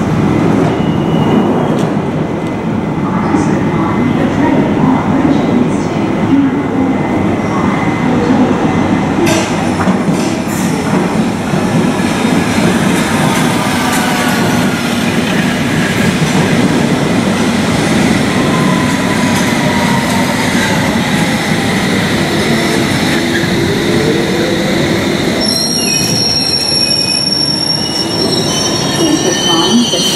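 London Underground S7 Stock sub-surface train running into the platform and braking to a stop, over a steady rumble. Its motor whine falls slowly in pitch as it slows, and a high steady squeal sets in a few seconds before the end as it comes to a stand.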